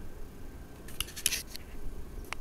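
A brief burst of crackling rustles close to the microphone about a second in, like something brushing against the camera.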